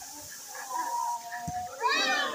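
Women's voices calling out in long, high-pitched cries that rise into a loud shriek near the end, with a dull thump about halfway through.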